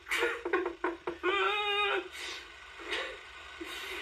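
A man giggling, stifled behind his hand: quick short snickers, then a drawn-out high-pitched giggle about a second in, fading to faint breathy sounds.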